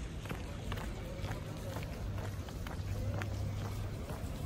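Footsteps on brick paving at a walking pace, about two a second, over a low steady hum.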